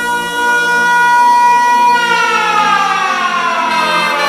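Siren-like electronic tone in a dance-music DJ mix: a held pitch for about two seconds, then a slow slide downward in pitch, with the bass beat dropped out underneath as a transition effect.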